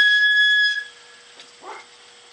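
A single electronic beep at the start of the power-feed run: one steady high tone lasting just under a second, then a faint steady hum underneath.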